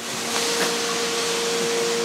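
A John Deere combine running close by: a steady rush of air with a single steady mid-pitched whine over it.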